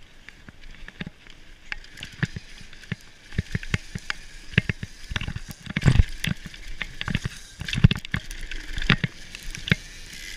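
Santa Cruz V10 downhill mountain bike running fast down a dirt trail: a steady rush of wind and tyre noise, with frequent sharp rattles and knocks from the bike over bumps. The knocks grow denser about three seconds in, and the heaviest come around six and eight seconds in.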